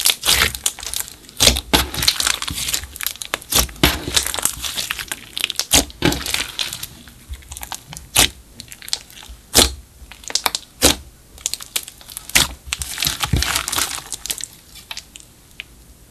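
Hands squeezing, pressing and stretching clear slime mixed with makeup and glitter, giving a dense run of sharp crackles and pops that thins out near the end.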